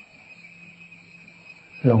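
Crickets chirping steadily in the background as a high, even trill during a pause in a man's speech. His voice comes back near the end.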